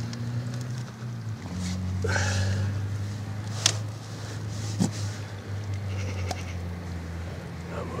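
A low, steady hum that shifts slightly in pitch about a second and a half in, with a sharp click about three and a half seconds in and a fainter one about a second later.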